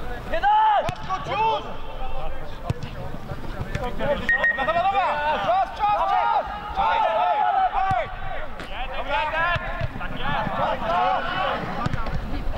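Several men's voices shouting and calling out across an open pitch during a football match, overlapping one another, with a few sharp knocks among them.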